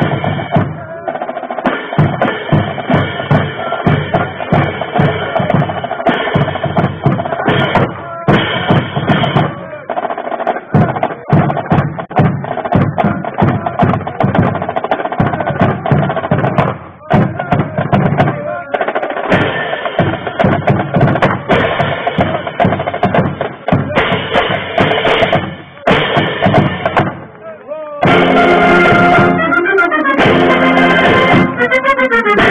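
Military marching band playing a march, with a steady drum cadence under horns. About two seconds before the end the full band swells louder on sustained notes.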